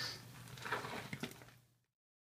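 Blacksmith's tongs and a hot steel billet knocking and clinking lightly against the anvil, with a knock at the start and a few small clicks after, over a steady low hum; the sound fades out shortly before the end.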